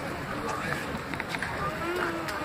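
Voices of several people overlapping outdoors, with a few short sharp clicks or knocks in between.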